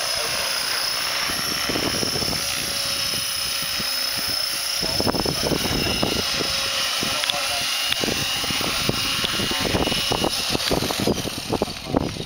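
Electric Align T-Rex 550 RC helicopter flying low and settling onto the grass: a steady high whine of the motor and spinning rotors over the rush of rotor wash. From about halfway on, gusty low buffeting on the microphone joins it and grows choppier near the end.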